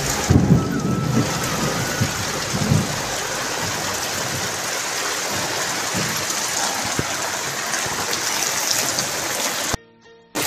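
Steady rain falling, a dense even hiss, with a few low thumps in the first three seconds. It cuts off abruptly just before the end.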